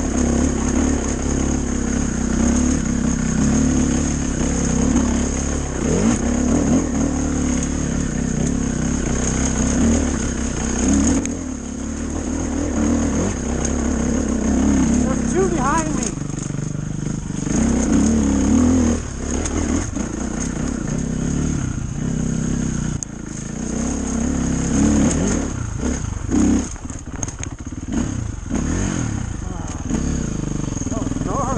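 Off-road dirt bike engine running under constantly changing throttle while riding a slippery singletrack, heard from the rider's own bike. The engine note rises and falls, with brief drops in loudness where the throttle eases off.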